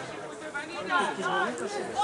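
Several people's voices talking and calling out, indistinct chatter of players on a football pitch.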